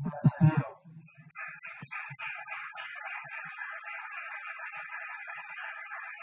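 A man's amplified voice finishes a sentence, then about a second and a half in an audience starts applauding steadily in a hall.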